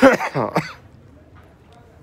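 A person loudly clearing their throat, a short raspy voiced burst in the first second or so, followed by faint background.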